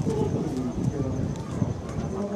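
Voices of people talking in the background, with low wind rumble on the microphone.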